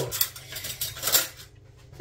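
Kitchen utensils and containers being handled: a few light clinks and knocks, the loudest just after a second in.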